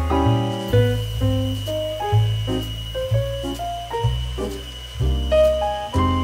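Background piano music: a slow melody of single notes over low bass notes that change about once a second.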